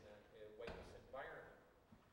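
Faint, indistinct speech in a hall, with a single dull thump a little under a second in.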